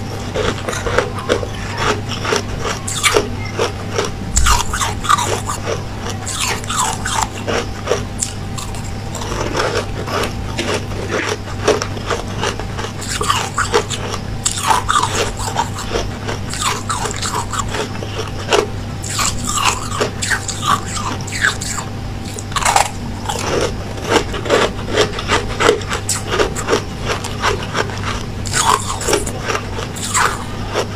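A person biting and chewing blocks of white ice close to the microphone: a continuous, irregular run of short crisp crunches, over a steady low hum.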